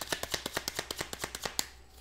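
A tarot deck being shuffled by hand: a fast run of card flicks, about ten a second, that ends with a louder snap of the cards near the end.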